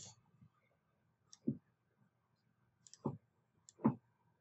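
Three soft computer mouse clicks, spaced about a second and a half then under a second apart, each a faint tick followed by a duller click, as vertices are picked in the modelling software.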